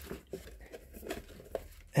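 Quiet rustling and a few light taps of a rigid cardboard product box being handled in the hands.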